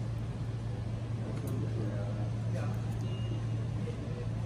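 Restaurant room tone: a steady low hum with faint murmuring voices in the background and a few light clicks.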